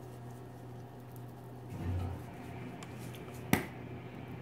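Handling of a spice shaker over a baking dish: a soft low thump about halfway through and one sharp click about three and a half seconds in, over a steady low hum.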